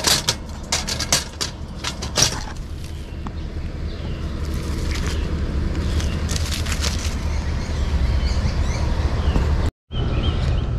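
Several sharp clicks and knocks in the first couple of seconds, then a steady low rumble that grows slightly louder before cutting off abruptly near the end.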